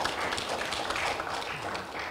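A small audience applauding in a hall, a dense patter of clapping that fades away near the end.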